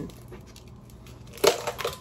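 Ice cube tray being twisted, with the frozen cubes cracking loose: one sharp crack about one and a half seconds in, then a few smaller cracks and clicks.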